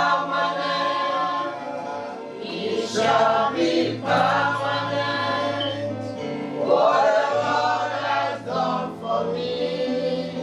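Voices singing a gospel praise chorus together over sustained keyboard bass notes, in phrases that start again about every three seconds.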